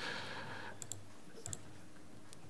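A brief hiss at the start, then two quiet clicks at a computer, about a second in and again half a second later.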